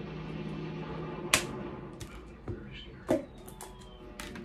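Tableware being handled: a few sharp clicks and knocks of a spoon and a food container against a ceramic bowl and the table, the loudest about a third of the way in.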